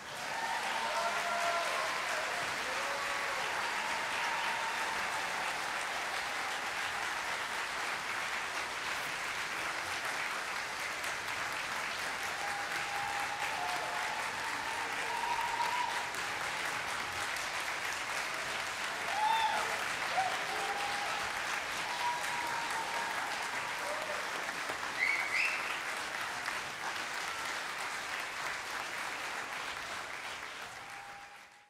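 A large concert hall audience applauding steadily, with a few voices shouting and cheering over the clapping.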